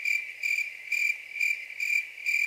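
Crickets chirping: a steady high trill pulsing about two times a second, starting abruptly. It is the comic cricket sound effect used as a cue for an empty, silent house.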